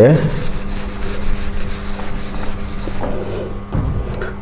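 A board eraser being rubbed back and forth across a chalkboard, wiping off chalk writing in quick strokes, several a second, which stop about three seconds in.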